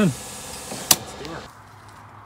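A single sharp click about a second in, over a steady background hiss that drops quieter about halfway through.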